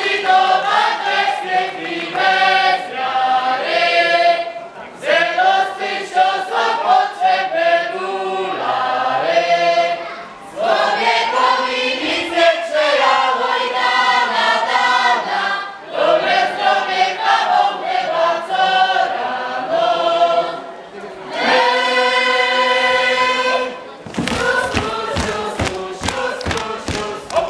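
A folk ensemble's mixed group of singers sings a Polish folk song unaccompanied, in phrases with short breaths between them, ending on a long held chord. Near the end, a fast run of thumps, about four a second, begins as the dance starts.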